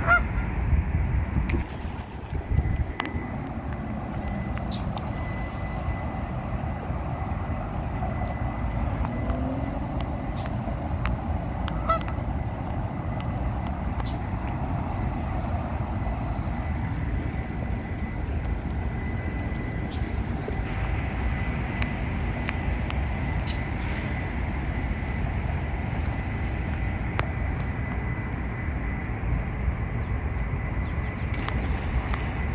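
Canada geese honking a few times, once near the start and again about twelve seconds in, over a steady low rumble with a faint steady high tone.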